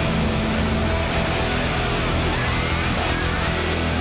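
Live rock band playing a loud, dense passage near the song's end: distorted electric guitar and drums together, held at full volume without a break.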